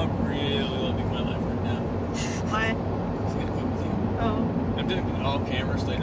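Steady low rumble of a car's engine and road noise heard from inside the cabin, with snatches of voices over it.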